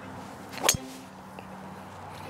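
A Titleist TSR driver striking a golf ball on a full swing: one sharp, ringing crack of impact about two-thirds of a second in.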